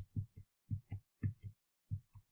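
Soft, low thumps in quick pairs, about two pairs a second, with a heartbeat-like rhythm.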